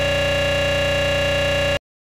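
A steady buzzing tone with many overtones, the TV station ident's music frozen into a looping glitch, held unchanged and then cut off abruptly near the end into silence.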